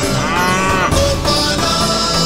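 A calf moos once, a single call that rises and falls in pitch and lasts most of the first second, over background music.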